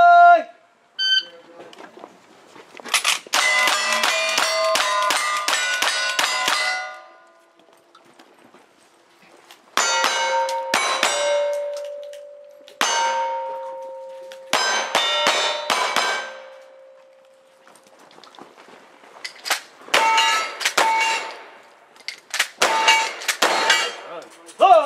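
Gunshots in fast strings, each hit answered by the ringing clang of steel plate targets that hangs on after the shots. There are three bursts with pauses between: revolver fire in the middle and long-gun shots on knockdown steel near the end.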